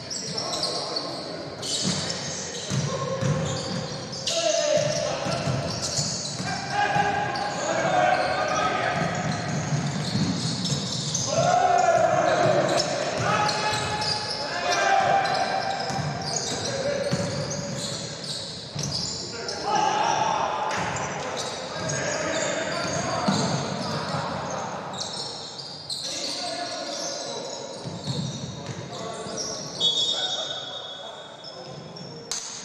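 Live indoor basketball game: a basketball bouncing on the hardwood court and sneakers squeaking, with voices calling out across the court, all echoing in a large gym.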